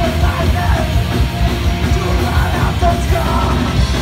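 A live band playing heavy rock, with electric guitars, bass and a drum kit, and a vocalist yelling over them.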